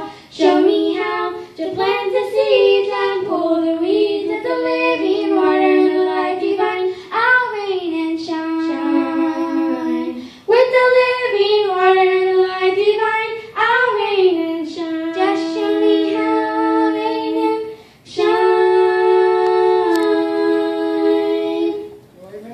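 Two girls singing a gospel song in two-part harmony into microphones, in phrases of a few seconds with short breaths between, the last phrase held on long notes near the end.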